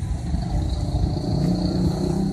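Street traffic: a motor vehicle's engine running as it passes close by, its note rising slightly in the second half.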